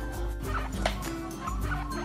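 Guinea pigs squeaking in a run of short, high calls over background music.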